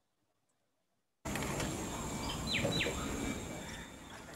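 Outdoor field-recording ambience of a mangrove river, played through a video call: a steady rushing noise that cuts in about a second in, with two quick falling chirps near the middle.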